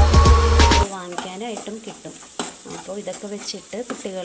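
Background music with a heavy beat cuts off suddenly about a second in. After that, a spatula scrapes and stirs sliced onions and spices in a frying pan, with a light sizzle and a few sharp knocks of the spatula on the pan.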